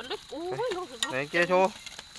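A voice talking in two short phrases in Thai, with faint scraping and rustling of soil as it is dug out by hand.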